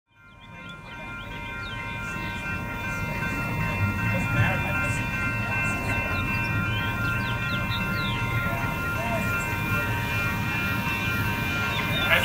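Outdoor ambience fading in: birds chirping over a steady low rumble, with several faint steady high-pitched tones running throughout.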